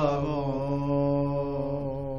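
A man's solo voice chanting a Sikh devotional verse, holding one long, steady note at the end of a line.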